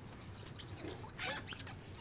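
Faint handling noises: a few soft scrapes and squeaks of something being moved about on a counter, the loudest a little past the middle.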